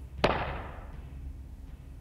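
A single sharp bang about a quarter-second in, its echo fading away over about a second and a half, over a low steady hum.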